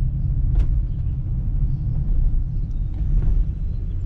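Cargo van driving slowly, its engine and road noise heard as a steady low rumble inside the cab, with a light click about half a second in.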